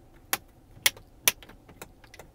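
Three sharp plastic clicks about half a second apart, then a fainter one near the end: the hinged flip-up covers of the console power points and 110-volt outlet being snapped shut.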